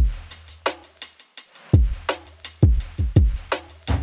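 Drum loop playing dry, with no effect on it: a kick, snare and hi-hat pattern, with a deep sustained low end under the kicks.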